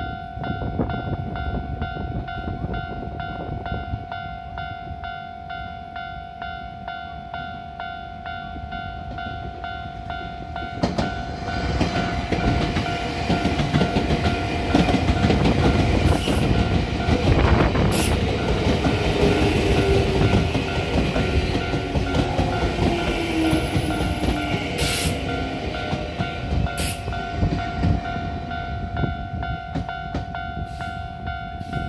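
Japanese level-crossing warning bell ringing continuously. A Nankai 9000 series electric train passes through at speed, its wheels rumbling and clattering on the rails, loudest about midway, with a few sharp high-pitched squeaks.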